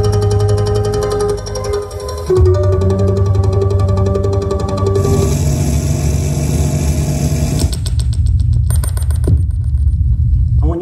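Live electronic music from electroacoustic sets: sustained tones over a deep bass drone, with fast pulsing clicks high up. The music changes abruptly about two, five and eight seconds in, each part a different piece.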